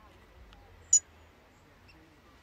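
A single short, sharp, high-pitched bird chirp about a second in, over faint outdoor background.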